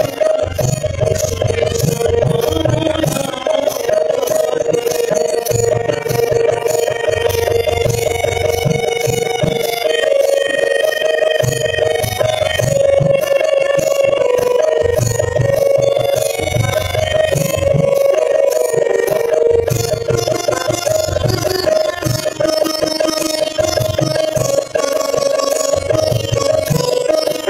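Harmonium playing a Bengali devotional kirtan tune over a steady drone, with a percussion accompaniment ticking a steady beat about three times a second.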